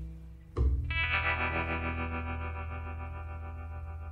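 Guitar music: the playing dies away, then about half a second in a single chord is struck and left to ring, slowly fading.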